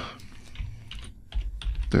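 Typing on a computer keyboard: a quick run of separate key clicks as a word is typed in.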